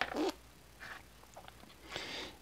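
Faint, scattered clicks and rustles of hands moving jumper wires and small electronic parts on a breadboard.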